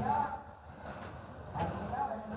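Speech only: two brief spoken words in Vietnamese, one at the start and one near the end, with a quieter pause of faint outdoor background between them.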